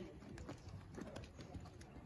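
Horse hoofbeats on soft arena sand footing: faint, irregular, muffled thuds of horses moving under saddle.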